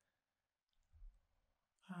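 Near silence: room tone, with one faint, soft sound about halfway through and the start of a woman's word at the very end.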